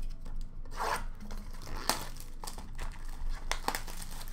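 Hands handling cardboard Upper Deck hockey card blaster boxes and packs: rubbing and rustling, with a few short clicks and knocks as a box is picked up.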